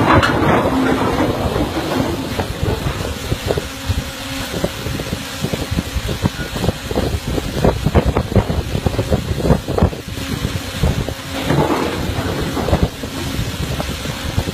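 Heavy anchor chain running over a ship's anchor windlass: a continuous low rumble with irregular metallic clanks from the links, thickest in the middle seconds, with wind buffeting the microphone.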